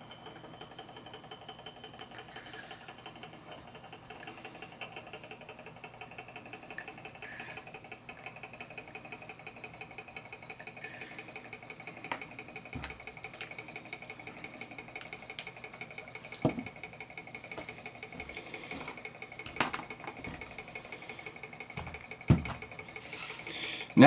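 Magnetic stirrer running with a steady faint high whine, while glassware and a plastic dropper bottle are handled: a few brief rustles and several light clicks of glass set down on the bench.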